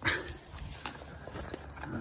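Faint footsteps and rustling handling noise from a handheld phone as its holder walks, with a few scattered light clicks.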